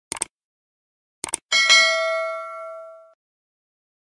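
Subscribe-button sound effect: a quick double click at the start, another double click a little over a second in, then a bright bell ding that rings out and fades over about a second and a half.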